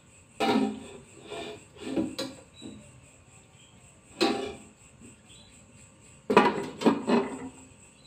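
Kitchen cookware clattering: a few separate metal clanks and clinks with brief ringing, then a quick run of knocks near the end, as the pots and lid of a stovetop steamer are handled.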